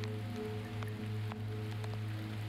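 Ambient soundtrack music: held low drone notes over a light hiss, with faint scattered clicks and crackles.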